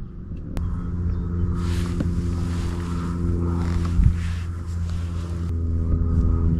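Bow-mounted electric trolling motor on a fishing kayak running with a steady hum that starts about half a second in and shifts slightly in pitch near the end. A soft rushing hiss rises and falls over the middle.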